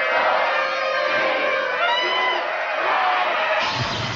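A movie-promo soundtrack: music mixed with the noise of a crowd, with some rising and falling voices about halfway through. A deep rumble comes in near the end.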